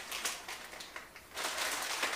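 Crinkling and rustling as a plastic packet of spicy noodles is handled, with scattered faint clicks, louder over the second half.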